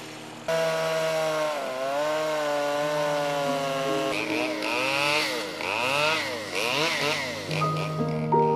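Chainsaw running while carving a log, coming in suddenly about half a second in; its pitch rises and falls as the engine is revved, more often from about four seconds in.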